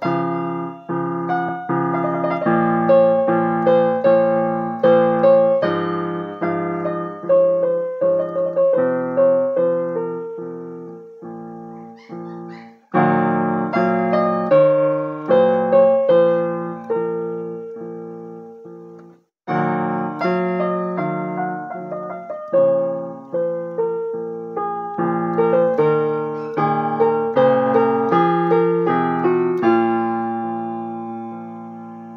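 Digital piano played with both hands: sustained chords under a slow melody line, with two brief pauses where the notes die away, a little before and a little after the middle.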